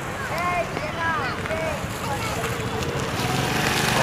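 A motor vehicle engine running, growing gradually louder, with wind on the microphone. Faint voices can be heard in the first second and a half.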